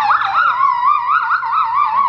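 A child singing one very high held note into a microphone, with a wide, exaggerated operatic vibrato that makes the pitch wobble up and down about four times a second; the note cuts off abruptly at the end.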